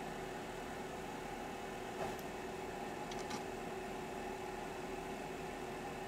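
A steady, faint machine hum with two even pitches, and a few faint clicks about two and three seconds in.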